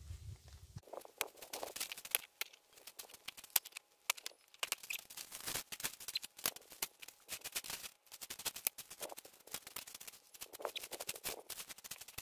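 Loose gravel crunching and small stones clicking against each other as the gravel is worked by gloved hands and then walked on: a dense, irregular run of sharp little clicks.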